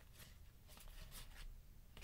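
Near silence with a few faint, brief rustles of trading cards being slid and flipped through by hand.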